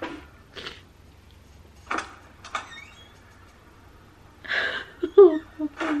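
A few brief, soft sounds on a quiet background, then a woman's voice saying 'ooh' near the end.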